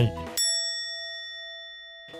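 A single bell-like chime sound effect, struck about half a second in, that rings on and slowly fades.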